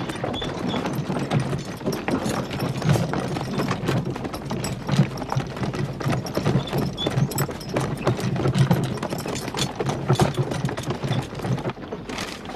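Horse hooves clip-clopping among the footsteps of a group walking on hard, dry ground: a dense, uneven clatter of steps.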